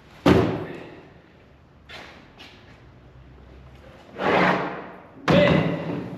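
Thuds and knocks of a primed plywood mold and duct parts being lifted, set down and shifted on a folding table: one sharp thud just after the start, two light knocks about two seconds in, and two heavier thumps near the end.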